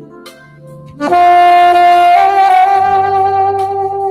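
Saxophone playing a slow melody. After a quiet first second, a loud long note comes in about a second in, steps up a little in pitch about two seconds in, and is held almost to the end, over a soft sustained accompaniment.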